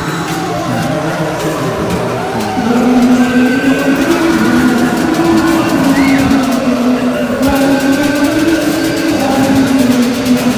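Raw black metal: dense, distorted guitar riffing held on sustained notes over drums, with a chord change a couple of seconds in and the music getting a little louder.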